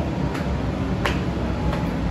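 Footsteps on a hard floor: three sharp clicks about two-thirds of a second apart, over a low steady rumble.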